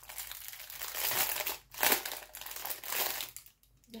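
Plastic packaging crinkling in bursts as it is handled, around a roll of tulle ribbon, loudest just before halfway and stopping shortly before the end.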